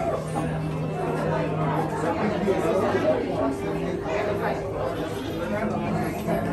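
Indistinct chatter of several people talking, with faint music and steady held tones underneath.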